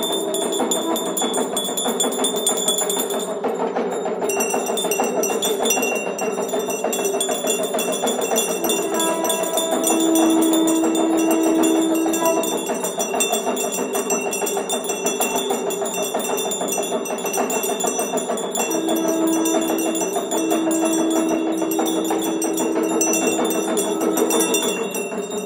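Temple bells and percussion ringing and clanging without pause during a Hindu aarti, with high bell tones throughout. A long held lower tone sounds over them twice, at about nine seconds in and again near the end.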